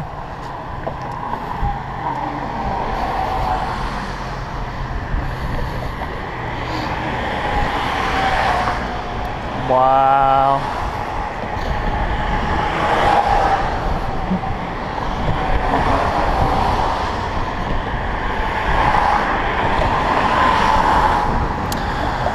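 Road traffic passing on a bridge: a steady rush of cars going by, swelling and fading as each one passes, with a man saying "Wow" about ten seconds in.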